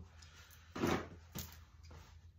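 Two brief knocks from small objects being handled on a work table: a louder one a little under a second in and a sharp click about half a second later, over a low steady hum.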